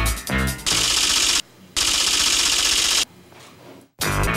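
Music bed giving way to a transition sound effect: two loud bursts of hissing noise, the first under a second and the second over a second long, with a short break between, then a quieter tail that drops out just before the end.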